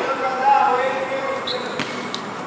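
A man's voice calling out to players, then, about a second and a half in, a short high squeak followed by a sharp knock of a futsal ball striking the concrete court.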